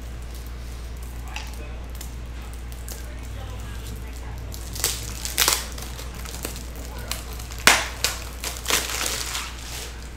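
Plastic wrapper crinkling and crumpling in a run of sharp crackles in the second half, loudest about eight seconds in, over a steady low electrical hum.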